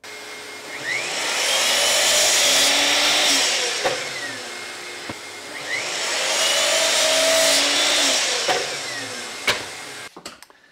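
Bosch sliding mitre saw making two cuts through a thin board: each time the motor spins up with a rising whine, the blade cuts for a couple of seconds, then the motor winds down. A sharp click comes near the end.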